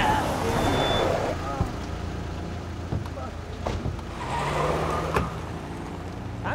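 A car engine running under a scuffle, with men's shouts and two sharp knocks, about three and a half and five seconds in.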